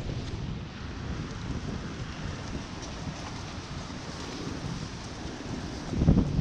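Strong wind buffeting the microphone, a steady low rumbling flutter, with a hiss of rain beneath it.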